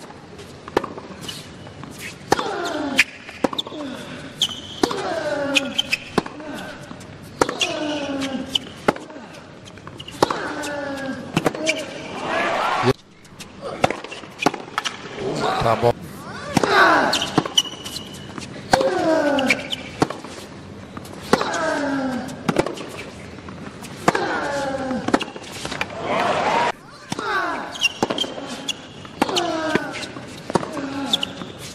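Tennis rallies: sharp clicks of racket strikes and ball bounces, with a player's grunt falling in pitch on shots roughly every two and a half seconds. There is a short lull about thirteen seconds in.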